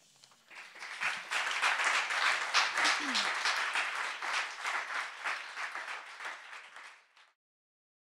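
Theatre audience applauding at the end of a poem, the clapping swelling up within the first second or two, then thinning out and dying away near the end.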